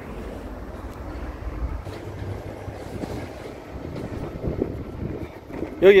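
Car driving on a country road: a steady low rumble of engine and tyre noise, a little stronger in the first two seconds.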